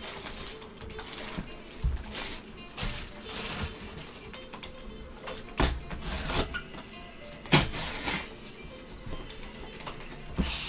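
Plastic shrink wrap crinkling and cardboard being handled as a sealed trading-card box is unwrapped and opened, with two sharper snaps about five and a half and seven and a half seconds in. Faint background music runs underneath.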